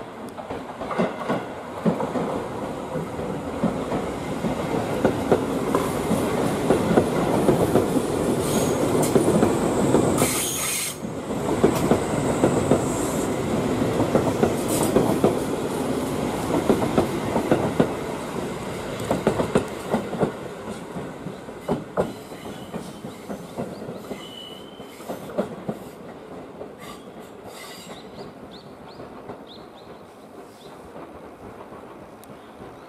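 Tobu 10000 series six-car electric train passing close by at low speed, its wheels clicking over rail joints and points, with a thin high wheel squeal and a short hiss about ten seconds in. The sound swells as the cars go past and fades over the last third.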